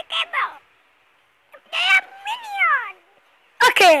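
A child's voice making high, gliding, meow-like squeals after a brief burst of speech at the start: one drawn-out call about two seconds in and a louder one falling steeply in pitch near the end.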